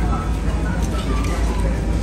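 Faint talking over a steady low rumble of room noise.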